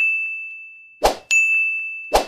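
Sound effects of an animated subscribe screen as buttons pop in. A clear ding rings out and fades. About a second in there is a short sharp pop, and a quarter-second after it another bright ding rings and slowly dies away.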